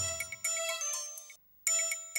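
Electronic intro music of bell-like chimes, which drops out for a moment about one and a half seconds in and then starts again.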